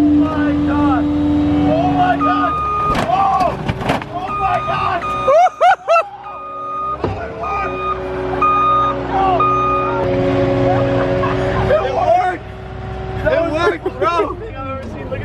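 Car engine revving hard and held at high revs while its wheels spin in loose dirt, the note shifting as the throttle changes; the car is stuck and straining to get out. Short intermittent beeps and shouting voices come through over it, and there is a loud jumble about five and a half seconds in.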